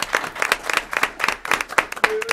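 Audience applauding: many people clapping, with dense irregular claps throughout.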